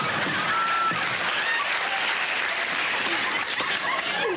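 Studio audience applauding and laughing, a steady unbroken wash of clapping.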